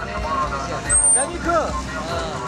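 A man talking over the steady rumble of street traffic, with a brief high squeak about a second in.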